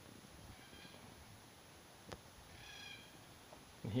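Black cockatoos calling faintly in the distance: a weak call about a second in, then a longer, clearer drawn-out call a little after the two-second mark.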